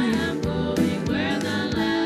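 Live church worship song: a voice singing a gospel hymn over band accompaniment.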